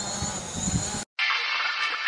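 High-pitched whine of a DJI Mavic quadcopter's motors and propellers running at take-off. About halfway through it cuts off abruptly and music begins.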